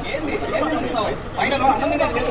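Only speech: several voices talking over one another, with one voice calling a name repeatedly near the end.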